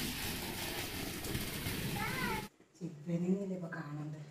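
A steady hiss of background noise, with one short rising-and-falling call about two seconds in. It stops abruptly and gives way to a person's voice.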